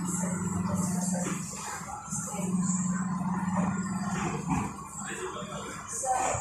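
Low steady hum inside an MTR East Rail train carriage, in two stretches of about two seconds each, with a faint hiss and background noise around it.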